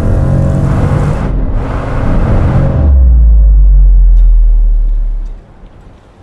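Car engine revving with a loud rushing whoosh as the SUV speeds past. About three seconds in, a deep bass boom takes over, holds for about two seconds and fades out.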